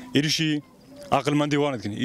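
A man's voice speaking in two short phrases with a brief pause between them.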